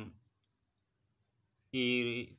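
A man's voice narrating news in Telugu: a phrase trails off just after the start, about a second and a half of near silence follows, and the narration resumes near the end.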